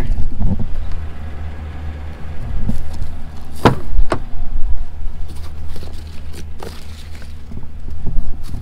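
A vehicle door being opened and someone climbing in: sharp clicks and knocks from the latch and door, the loudest two close together about four seconds in and lighter knocks later, over a steady low rumble.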